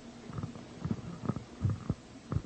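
Soft, low thumps and bumps, about six in irregular quick succession.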